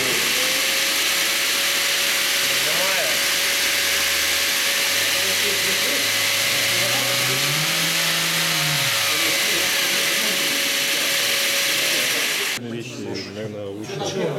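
Mirka Ceros electric random orbital sander running against wood, with a steady motor whine over a loud sanding hiss. It stops abruptly about twelve and a half seconds in.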